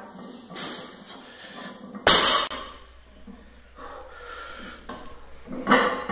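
A 315-pound loaded barbell set down on the floor with a single sharp thud about two seconds in, with the lifter's breathing around it.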